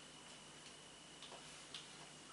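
Near silence: room tone with a faint steady high whine and a few faint ticks about half a second apart.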